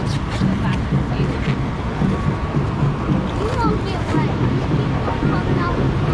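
Steady rush of water around a round river-rapids raft as it floats along the ride channel, with wind on the microphone and riders' indistinct voices. A few short knocks or splashes come in the first second or so.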